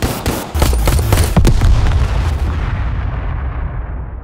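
A rapid, uneven volley of gunshots, as from a pistol, over a deep low rumble. The shots stop after about two and a half seconds and the rumble fades away.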